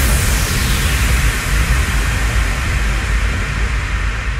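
A loud wash of white noise over a deep rumbling bass, hitting abruptly as the melody stops and holding with its hiss slowly thinning: a synthesized noise effect ending an electronic dance track.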